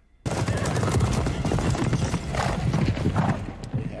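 Film soundtrack of horses galloping in a charge, a dense clatter of hooves with battle noise, coming in abruptly after a moment's silence and thinning out near the end.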